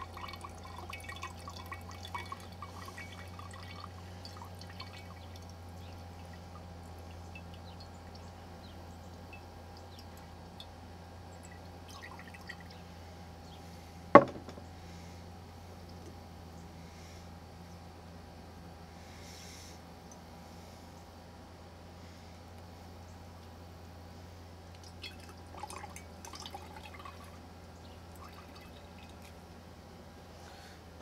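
Fire cider dripping from a cheesecloth bundle through a plastic funnel into a glass mason jar, the drips thinning out after the first few seconds, over a steady low hum. One sharp knock about halfway through.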